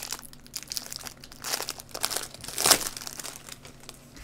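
Trading-card pack wrappers crinkling as gloved hands open and handle the packs, in irregular bursts, loudest about two-thirds of the way through.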